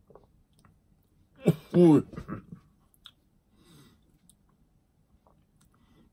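A man's short, loud wordless groan about a second and a half in, a reaction of distaste to a swallow of harsh-tasting rum, followed by smaller mouth sounds. There is a light tap about three seconds in as the shot glass is set down on the table.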